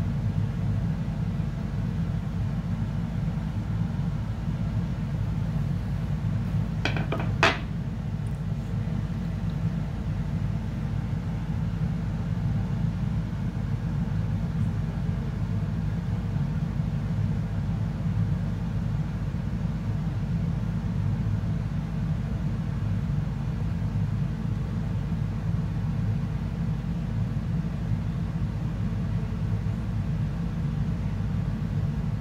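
Steady low background rumble throughout, with a person's sharp inhale about seven seconds in.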